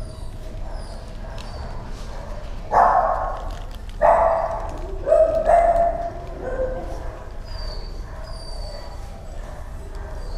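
Dog barking: four loud barks between about three and six seconds in, with a short echo after each.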